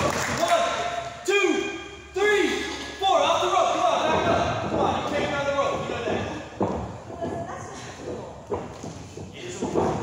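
Sharp thuds of impacts on a wrestling ring's canvas, three of them close together in the first few seconds and a few lighter ones later, echoing in a large hall. Shouting voices run between them.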